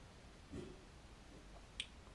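Near silence: quiet room tone, with a faint short sound about half a second in and a single short click near the end.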